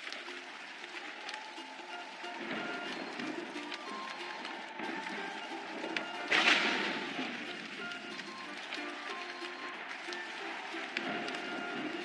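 Background music over a steady hiss of rain, with a brief louder rush of noise about six seconds in.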